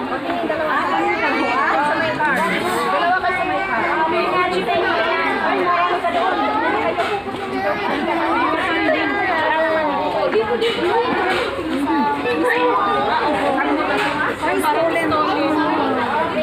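Several people talking at once: overlapping voices and chatter.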